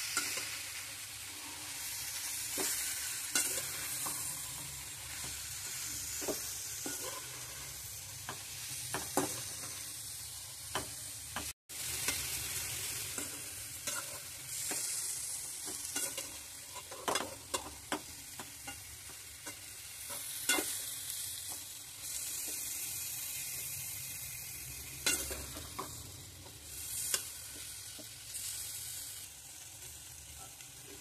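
Chicken pieces with onions, bell peppers and green chillies sizzling in a metal pan while being stirred, with frequent short clicks and scrapes of the spoon against the pan. A brief dropout to silence a little over a third of the way in.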